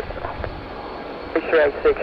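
Air traffic control radio: about a second and a half of hiss and low rumble, then a controller's voice comes in with taxi instructions.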